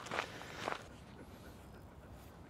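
Two soft rustles of movement, about a quarter and three-quarters of a second in, then faint background hiss.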